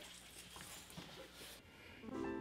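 Near silence: faint room noise with a couple of soft, faint rustles from two people grappling.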